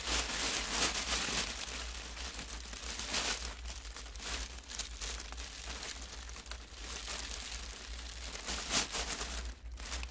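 Clear plastic shrink-wrap bag crinkling in irregular bursts as its gathered top is handled and tied with ribbon, loudest in the first second or so and again near the end.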